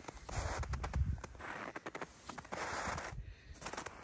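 Footsteps crunching in deep snow: a run of soft, irregular crunches.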